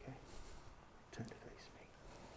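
Very quiet room tone with faint whispering and one brief soft voice sound about a second in.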